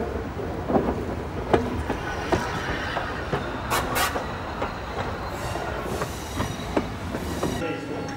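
Class 01.10 steam locomotive rolling slowly on rails: a steady rumble from the wheels and running gear, broken by irregular clanks and knocks about once a second. Near the end a steady hum takes over.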